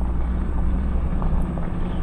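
A car driving along a road, its engine and tyres making a steady low rumble.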